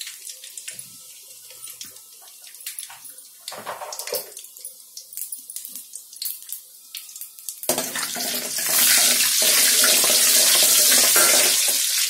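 Whole spices frying in hot oil in an aluminium kadai: scattered small pops and ticks at first, then about eight seconds in a loud, steady sizzle takes over.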